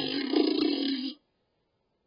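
A young boy making a long, rasping, silly noise with his voice and mouth, which stops a little over a second in.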